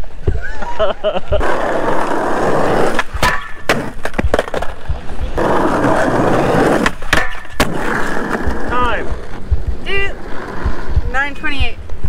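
Skateboard wheels rolling over concrete in two stretches, broken by sharp clacks of the board and trucks hitting the ground and an obstacle as the skater attempts blunt tricks.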